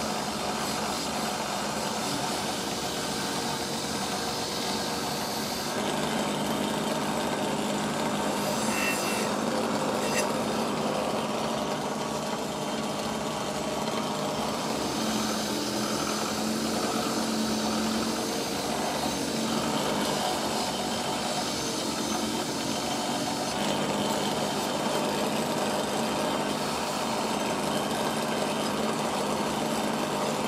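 Bench grinder running with a steady hum while its wire wheel scrubs the rust off a rusty steel mill file pressed against it: a continuous scratchy hiss of wire bristles on metal.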